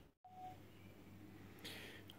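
Near silence: faint room tone with a low hum, broken by a brief total dropout just after the start.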